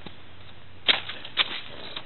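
Two footsteps crunching on ice- and sleet-crusted ground, about half a second apart near the middle.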